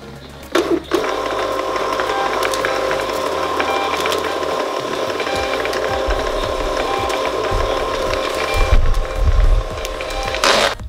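Thermal label printer printing a continuous run of shipping labels: a steady whirring of its feed motor with light clicking. It starts about a second in and stops shortly before the end.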